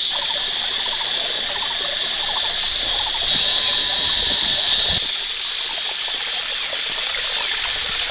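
Steady, high-pitched insect chorus of the forest, with short pulsing frog-like calls repeating in the first few seconds. The chorus grows louder for about two seconds in the middle.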